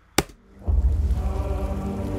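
A film teaser's score begins after a short click: a deep low rumble with a sustained held chord over it, starting under a second in.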